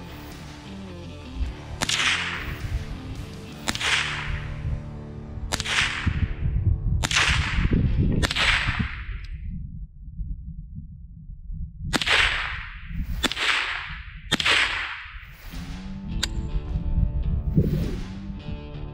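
Armscor M1600 .22 LR blowback semi-automatic rifle firing single shots: about eight sharp cracks spaced one to two seconds apart, with a pause of about three seconds in the middle. Each crack trails off over about a second.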